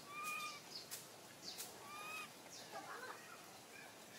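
A baby long-tailed macaque giving two short high-pitched coo calls about a second and a half apart, each a single slightly falling note.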